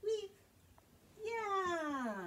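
A short high vocal note, then about a second later a long drawn-out one that slides steadily down in pitch.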